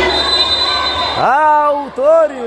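A referee's whistle blown in one steady, high blast of about a second, signalling a foul and a free kick in a futsal match. A voice then calls out over the hall's crowd noise.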